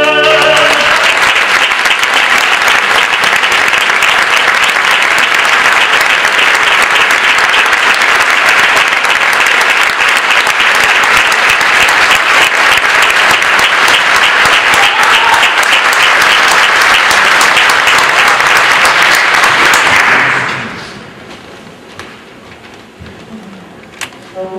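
An orchestra's last sustained chord cuts off at the start, and a theatre audience breaks into loud, steady applause. The applause drops away about twenty seconds in.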